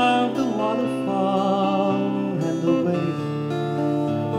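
A man singing long held notes over a strummed acoustic guitar, live solo performance of a country folk song.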